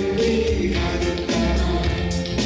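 A Korean popular song performed live: voices singing together with held notes over a steady instrumental accompaniment.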